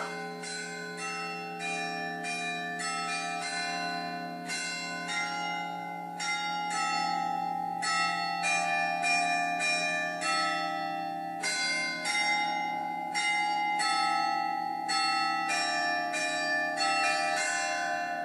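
Church bells ringing a peal, one stroke roughly every half second, the bells at different pitches so that the tune shifts from stroke to stroke, each ringing on under the next.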